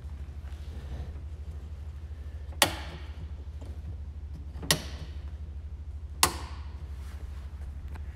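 Three sharp clicks, about two seconds apart, over a steady low hum.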